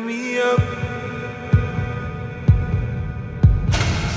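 Techno DJ mix in a breakdown: held synth chords over a deep kick drum that hits about once a second, with a rising noise sweep near the end.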